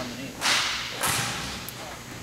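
Two sharp, swishing cracks about half a second apart, each dying away with a short echo as in a large hall.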